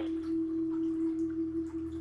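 Soft background meditation music holding a single steady, pure mid-pitched note, with a faint low hum beneath it.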